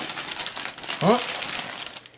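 Glossy Christmas wrapping paper crinkling and rustling as hands fold and press it around a gift box, with quick crackles throughout.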